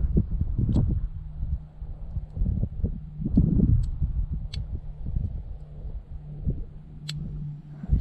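Pin tumblers of an American Lock Series 30 padlock being worked with a lock pick: a handful of faint, sharp metallic clicks spread out over several seconds. Low wind rumble on the microphone sits under them.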